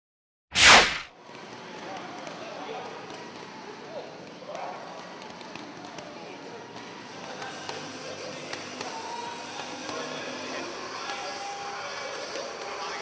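A sharp whoosh transition effect about half a second in, the loudest sound, followed by the steady noise of a boxing training session in a gym, with faint voices and occasional soft knocks.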